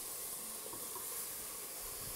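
Chopped onion, carrot and celery sizzling steadily in hot oil in a stainless steel pot, with rehydrated porcini mushrooms being added.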